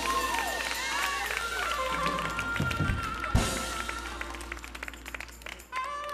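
Close of a gospel choir song: held keyboard or organ notes with voices calling out and scattered claps from the congregation, fading out. Near the end a different instrumental tune of clear stepped notes starts.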